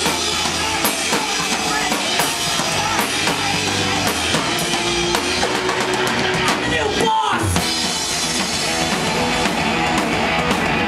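A rock band playing loud and live: drum kit and electric guitar, with a short break in the low end and a falling sweep about seven seconds in.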